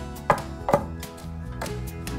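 Two sharp knocks about half a second apart, over background music.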